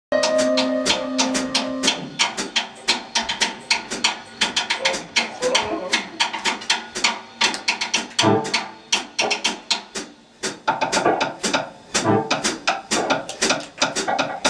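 Drum kit played loosely in a pre-song warm-up: quick, irregular stick hits with a couple of low bass-drum thuds. A keyboard chord is held through the first two seconds.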